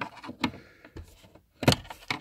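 Small screwdriver clicking and knocking against a metal cigarette-lighter socket and its plastic surround as the socket is pried loose: a few light clicks, with the loudest knocks near the end.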